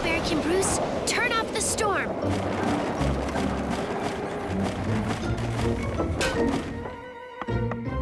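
Cartoon storm sound effects: a steady rush of wind noise with low thuds, under background music and a few short squeaky voices about a second in. The storm noise drops away near the end.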